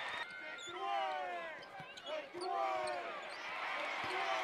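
Basketball dribbled on a hardwood court, with sneakers squeaking on the floor in long, falling squeals.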